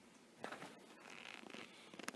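Near silence with a faint rustle: a soft click about half a second in, then a light scratchy noise through the second second.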